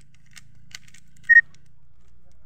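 A few light clicks of a plastic Rubik's cube's layers being turned by hand. About two-thirds of the way in comes a short, loud, high-pitched beep, the loudest sound here.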